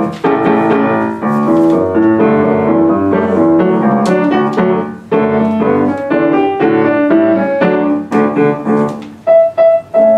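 A grand piano played solo: a lively tune of short, separate notes over a repeated low note, with brief breaks about five seconds in and near the end.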